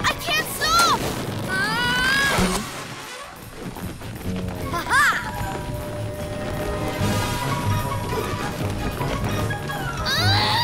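Cartoon soundtrack: background music, with a child character's short wordless yelps in the first couple of seconds and a brief rising swoop about halfway.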